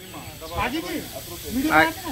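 A steady hiss with short snatches of a person's voice, once about half a second in and again near the end.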